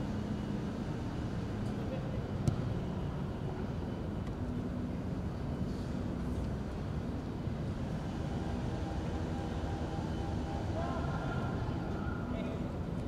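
Open-air ambience at a football pitch: a steady low rumble with faint, distant players' shouts, and a single sharp knock about two and a half seconds in.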